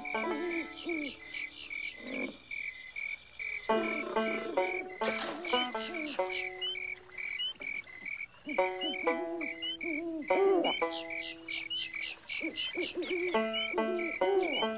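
Frogs croaking in low calls that slide up and down, over crickets chirping in a steady, even rhythm: the bayou night ambience of the Pirates of the Caribbean ride.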